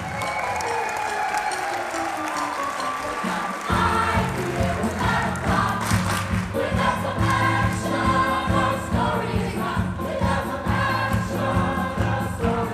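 Stage-musical finale number: the cast sings together with a live band of keyboard and drums. For the first few seconds there are held sung notes. Bass and drums come in about four seconds in with a steady dance beat.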